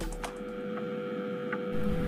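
A steady low hum, one even tone under faint noise, with a couple of faint ticks.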